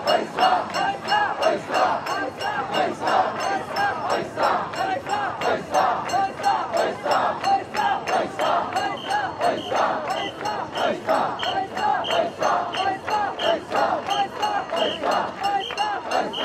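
A large group of mikoshi bearers shouting a rhythmic chant in unison, pulsing about twice a second as they shoulder and bounce the portable shrine, with metallic clinking mixed in.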